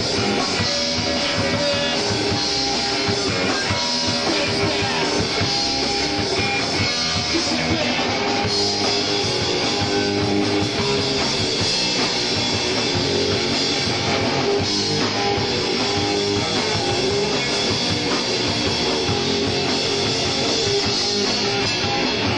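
Punk rock band playing live: electric guitar and drum kit at a steady, loud level without a break.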